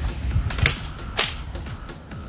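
Spring-powered Buzz Bee Air Warriors Bug Hunter salt blaster's mechanism snapping as it is fired: three sharp clicks about half a second apart.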